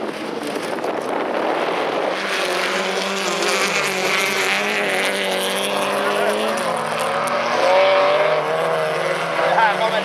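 Several folkrace cars racing on a dirt track, their engines revving and running at once, with engine notes rising and falling as they accelerate and lift off.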